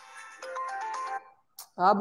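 Mobile phone ringtone playing a melody of stepped tones, cut off a little past a second in as the call is answered. A man's voice says a word near the end.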